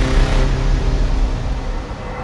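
Cinematic logo-sting sound effects: the low, rumbling tail of a whoosh-and-hit dying away with a few faint held tones, growing quieter toward the end.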